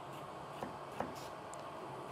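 Faint knife taps on a cutting board as a carrot is diced: a few soft, irregular clicks about half a second apart over quiet room tone.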